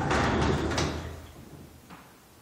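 Double closet doors being pulled open: a sliding, rumbling noise for about a second that fades away, then a light click near the end.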